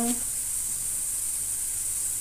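A steady high hiss of onions frying in a pan, with no crackles or pops standing out.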